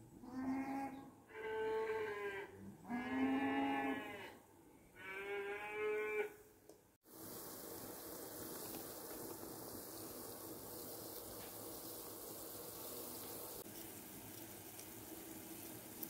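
Cattle mooing, four drawn-out calls in about six seconds. About seven seconds in the sound cuts to a steady, even hiss.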